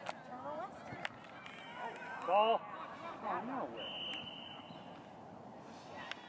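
Unclear voices calling across an outdoor soccer field, the loudest shout about two seconds in, followed by one steady referee's whistle held for about a second and a half.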